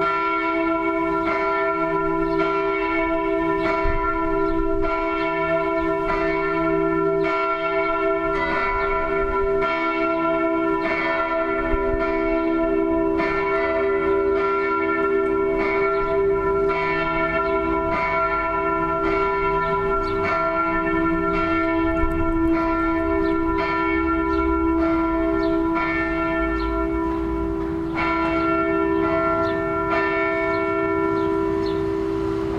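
Växjö Cathedral's church bells ringing, struck about once a second, with their tones hanging on and overlapping in a steady sustained hum. A low rumble sits underneath in the latter part.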